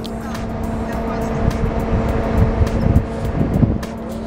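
Steady low hum of an idling minibus engine, with wind buffeting the microphone and faint voices in the background.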